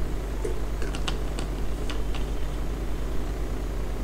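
A handful of faint computer-keyboard taps, scattered over the first two seconds or so, over a steady low hum.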